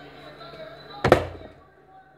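Partly filled plastic water bottle landing upright on a tiled counter after a flip: one sharp thud about a second in.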